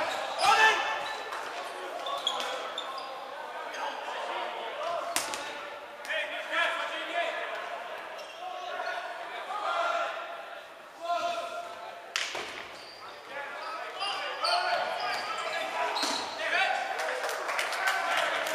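Players calling and shouting across a gymnasium, echoing in the hall, with dodgeballs bouncing and smacking on the hardwood court: a few sharp hits spread through, and a quick run of them near the end.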